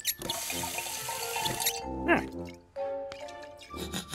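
Water running from a sink tap into a glass flask for about a second and a half, then cut off.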